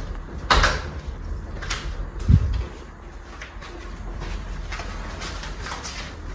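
A sharp click about half a second in, a smaller click, then a short low thump, followed by faint scattered clicks and rustling.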